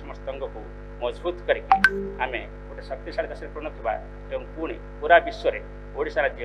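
Steady electrical mains hum under a man speaking into podium microphones.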